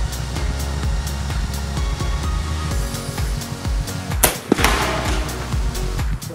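Background music with a steady beat, and about four seconds in a single sharp crack from a .25 AirForce Condor PCP air rifle firing, followed a moment later by a second crack and a short noisy tail.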